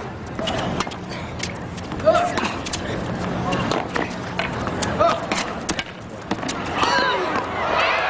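Tennis rally: sharp, irregular racket-on-ball hits, with voices from the crowd in the background.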